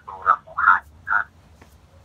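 Speech only: a person talking in three short, separate syllables with short pauses between them.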